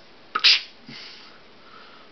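A short, sharp hissy 'tchh' made with a person's mouth about half a second in, with a click at its start, followed by a faint breathy hiss.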